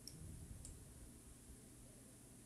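Two faint computer mouse clicks, about half a second apart near the start, over near-silent room tone.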